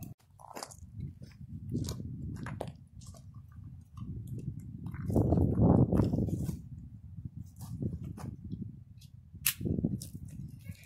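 Rustling of nylon straps and scattered sharp clicks as a vest's straps and buckles are fitted on a goat, with a louder low rustling about five to six seconds in.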